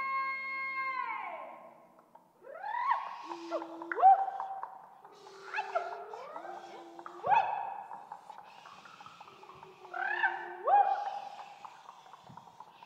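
A held chord fades out in the first two seconds. Then comes a series of overlapping, animal-like calls, each sliding up in pitch and then holding a steady tone, with a few sharp knocks among them.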